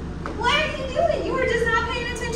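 A woman's voice speaking in a high-pitched, sing-song way from about half a second in, over a steady low hum.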